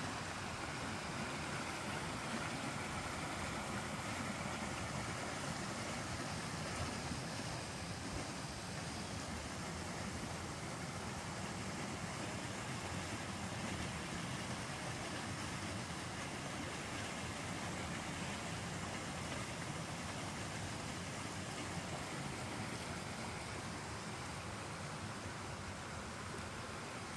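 Small creek flowing over rocks: a steady, even rushing noise that holds constant throughout.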